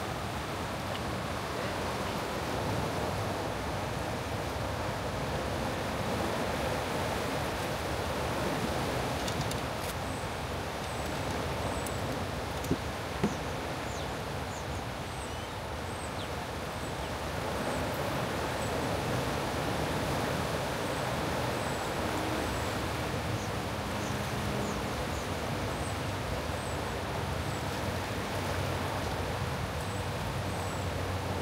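Steady rush of turbulent dam outflow water churning through the tailwater. Two sharp clicks about halfway through, and faint high chirps repeat through the second half.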